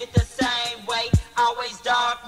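Hip hop track from an early-1990s cassette: deep bass drum hits that drop in pitch, under a vocal line.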